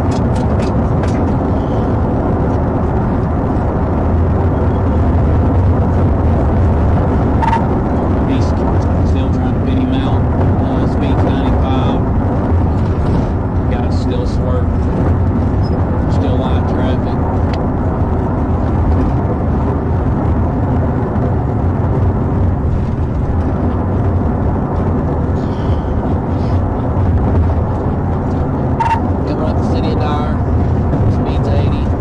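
Police cruiser's engine and tyre-and-wind noise heard from inside the cabin during a pursuit at about 100 mph, easing toward 80 mph: a loud, steady low rumble with a hum, with scattered short clicks.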